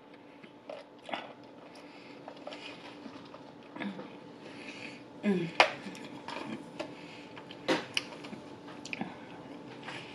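Close-miked eating sounds of a person chewing sushi: wet chewing and mouth noises with a few sharp clicks, the loudest a little past halfway and near the end. A short hummed "mm" falls in pitch about halfway through.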